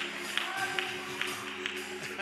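Steady hand claps, about two or three a second, over a sustained low chord held on an instrument.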